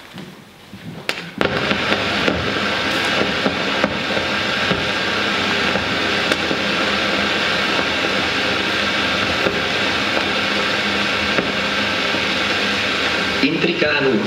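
Soundtrack of a 1930s Czech short film starting up over its opening titles: a loud, dense, steady noisy sound that comes in suddenly about a second and a half in.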